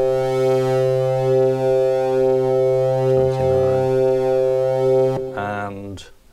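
Studiologic Sledge synthesiser holding a steady organ-style tone, band-pass filtered with resonance for a mid-heavy, guitar-amp-like character, as drive is turned up to dirty it. It cuts off suddenly about five seconds in.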